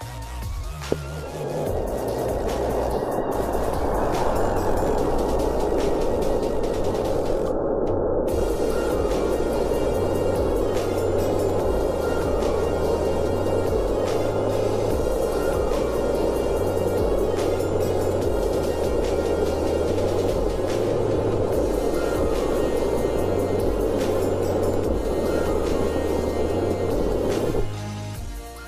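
An Estes F15 black-powder model rocket motor burning on a test stand, slowed down eight times so its burn becomes a deep, steady rushing noise that starts about a second in and cuts off near the end. Electronic music with a repeating bass line plays underneath.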